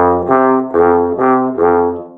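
Bass trombone with independent valves playing low F below the bass staff and the C above it back and forth, about five sustained notes, both taken in second position with the second valve down.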